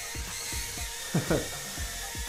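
JJRC H56 mini quadcopter's small motors and propellers giving a steady high whine as it flies, with a short burst of voice about a second in.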